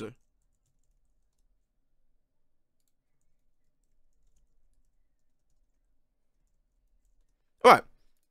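Near silence: a man's speech ends right at the start, and he says "Alright" near the end.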